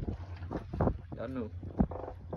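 Steady low rumble of wind and water around a small fishing boat at sea, with a brief spoken sound about halfway through and a sharp knock near the end.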